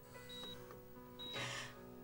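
Soft, sustained background music with a short, high electronic beep repeating about once a second, like a hospital heart monitor. A short crying breath comes about one and a half seconds in.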